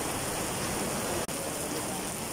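Heavy rain falling steadily, a dense even hiss, broken by a momentary gap in the sound just over a second in.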